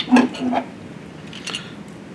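A few short knocks and clicks of a hand handling the back of a plastic electronic device and its plugged-in cables: one at the start, two close together within the first second, and fainter ticks later.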